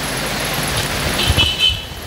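A road vehicle passing, a rushing noise that swells and then eases, with a brief horn toot about a second and a half in.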